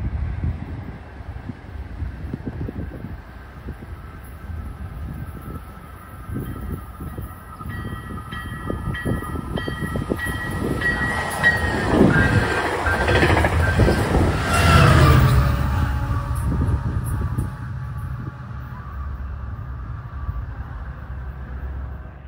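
A Coaster commuter train passing close by. Its horn sounds in several blasts as it approaches, and the pitch drops as the locomotive goes past about halfway through. The rumble and clatter of the bilevel cars over the rails are loudest a few seconds later, then ease off.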